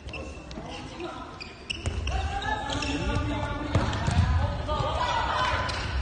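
A ball bouncing on a sports hall floor during an indoor game, with a few sharp impacts and shoe squeaks. From about two seconds in, several voices shout over it, all echoing in the hall.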